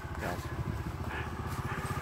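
Trials motorcycle engine idling with a low, even pulse.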